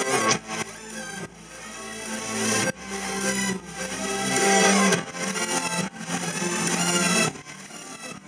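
Live band music with acoustic guitar and sustained, drawn-out tones, some gliding in pitch.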